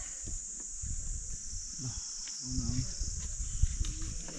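Steady high-pitched drone of insects, with irregular low knocks and rustles close by, the loudest about three and a half seconds in.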